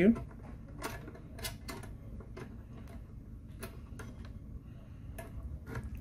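Irregular light clicks and taps of a USB thumb drive being felt for and pushed into a port on the underside of an EPOS touchscreen terminal, about ten small clicks spread over several seconds.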